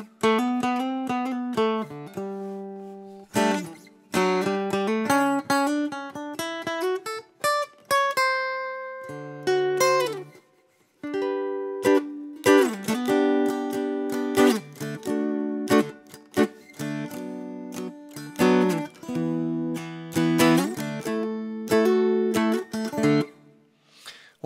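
Mountain dulcimer strummed and picked, playing a chordal melody through a blend of its magnetic pickup, piezo pickup and microphone. There is a short break about ten seconds in before the playing resumes.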